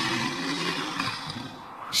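Cartoon sound effect: a rushing, hissing noise over a low rumble, swelling up at the start and fading away near the end.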